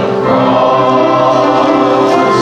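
Congregation and worship band singing a hymn together, with acoustic guitar accompaniment.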